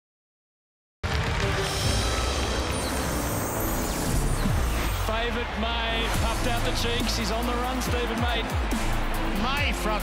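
Silence for about a second, then background music with a steady beat, with a voice over it.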